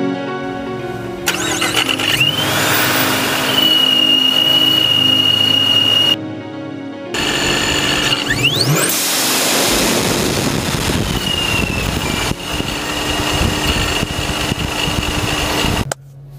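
Centrifugal supercharger on a Dodge Charger R/T's 5.7 L Hemi V8, the engine running with the blower's high whine rising and then holding steady. About halfway through the engine is revved quickly, and afterwards the whine drops in pitch and settles.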